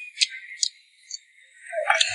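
Close-miked chewing of a garlic-topped oyster: a few sharp, wet mouth clicks, about three in two seconds, with a short hum from the eater near the end.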